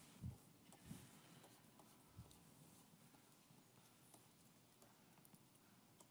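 Near silence: room tone, with three soft low thumps in the first two and a half seconds, the first the loudest, like handling at a lectern.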